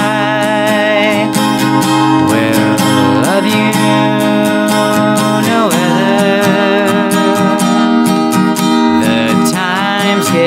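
A man singing long held notes that waver in pitch and slide between notes, over a steadily strummed acoustic guitar.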